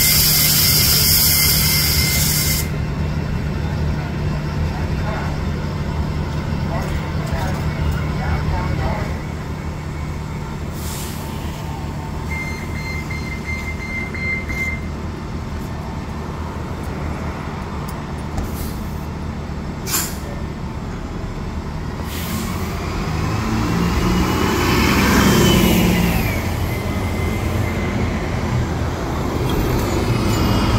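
Diesel transit bus idling at the curb with a steady low hum, a hiss of released air over the first couple of seconds. Late on, an articulated city bus pulls past close by, its engine growing louder with a whine that rises and falls before easing off.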